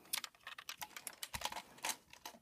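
A toy school bus being handled: a quick run of light, irregular clicks and taps as its doors and other moving parts are worked.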